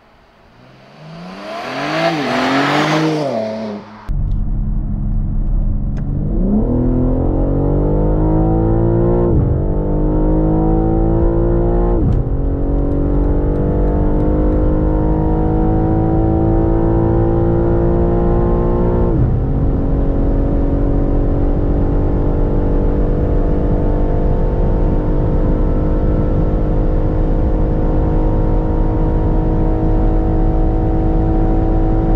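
BMW M3 G81 Touring's twin-turbo S58 straight-six passing by at speed, its note rising and then falling in pitch as it goes. It then pulls at full throttle from inside the cabin, upshifting three times with a sharp drop in revs at each shift. The last shift, into sixth at about 200 km/h, is followed by revs climbing slowly towards top speed.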